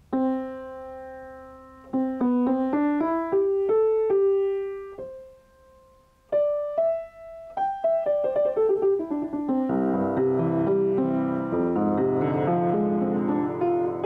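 Pramberger (high-end Young Chang) 5'3" grand piano being played. One struck note rings out and dies away, then a slow rising line of single notes follows, with a near-silent pause about six seconds in. From about ten seconds the playing fills out into full, dense chords.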